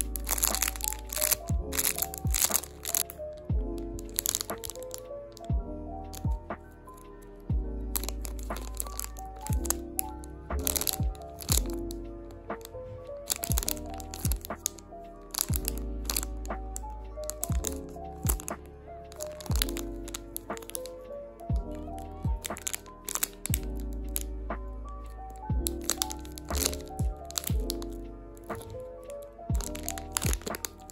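Clear plastic packaging bags crinkling and crackling as they are handled, in sharp, irregular clusters throughout, over instrumental background music with held bass notes.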